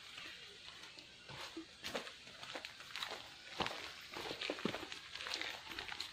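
Footsteps on a leaf-strewn dirt forest trail: irregular short scuffs and clicks, more frequent in the second half.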